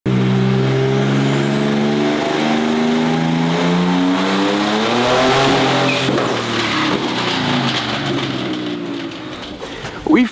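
Twin-turbo BMW G82 M4 inline-six (S58) held at full throttle on a chassis dyno, with a thin whine climbing over the engine note. About six seconds in there is a sharp crack as the engine fails under nitrous with fire and sparks. After it the engine and dyno rollers wind down, falling in pitch and fading.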